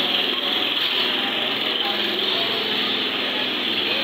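Loud street noise in a busy lane: voices mixed with a small motorcycle engine running. It starts and stops abruptly.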